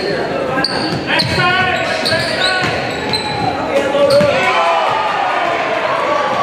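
Indoor basketball game: a ball bouncing on a hardwood court and several short, high sneaker squeaks, over the voices of players and the crowd, all echoing in a large gym.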